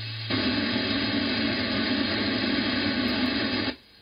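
Radio receiver static from a Funcube Dongle Pro+ SDR playing through the computer's speaker on an empty 2 m band channel, with no signal present. The loud hiss comes on abruptly just after the start and cuts off suddenly near the end.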